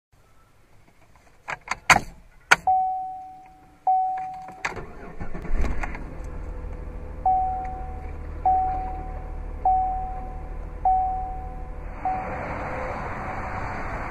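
Inside the cabin of a 2009 Chevrolet Impala: a few sharp clicks of the key and ignition, then two warning chimes. About five seconds in, the 3.5-litre V6 cranks and starts, then idles with a low hum, while a single-tone warning chime repeats about every second and a quarter. A steady hiss rises near the end.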